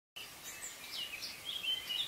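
Faint bird chirps and short whistled glides over a low background hiss.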